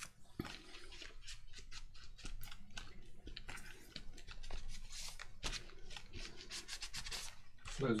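Hands smoothing glued paper cutouts flat onto a journal page with a palm and a folded tissue: faint, scratchy paper rubbing and rustling in a run of short strokes.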